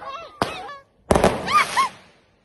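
Fireworks going off close by, two sudden bangs about half a second and a second in, with young women shrieking and squealing over them.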